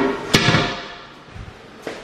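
A single sharp thump about a third of a second in, followed by a brief scuffing noise that fades, then a lighter click near the end.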